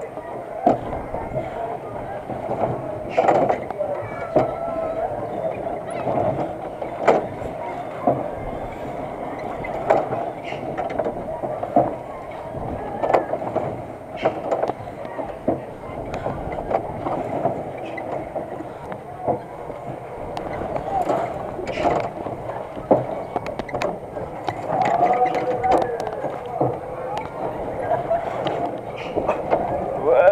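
Spider spinning amusement ride in motion, heard from on board: irregular knocks and clanks from the ride car over a steady running noise, with voices throughout.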